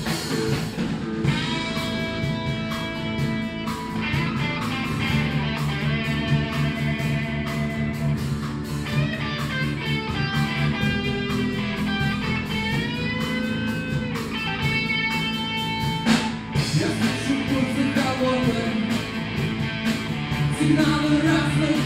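Rock band playing live in an instrumental break: a lead electric guitar holds long notes and bends them over drums, bass guitar and strummed acoustic guitar. A loud accent about sixteen seconds in marks a change of section.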